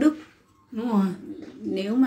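A woman singing hát then, the Tày ritual chant, in short falling, cooing vocal phrases, with a brief breath pause shortly after the start.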